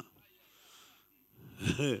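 A man's short laugh near the end, after a near-silent pause.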